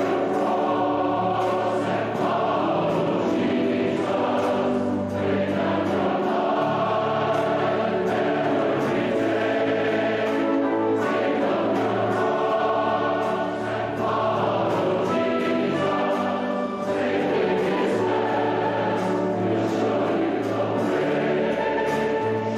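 A large choir singing a sacred choral anthem with orchestral accompaniment, in long held chords.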